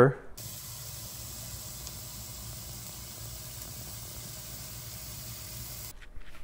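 Steady, even hiss with a faint low hum underneath, starting abruptly just after the last word.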